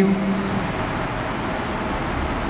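Steady background noise, an even hiss with a low rumble, after a man's drawn-out word fades in the first moment.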